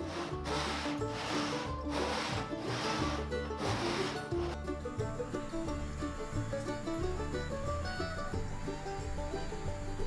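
Background music with a steady bass line. During the first half, about seven rhythmic strokes of a hand crosscut saw cutting across a wooden tabletop can be heard over the music, then they stop.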